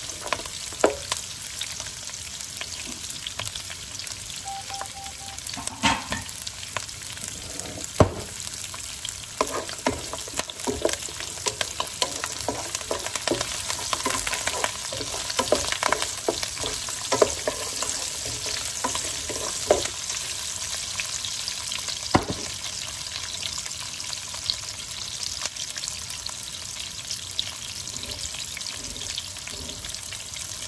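Cashews, onion chunks and curry leaves sizzling in oil in a nonstick frying pan, with a steady hiss. A wooden spatula stirs them, knocking and scraping against the pan now and then.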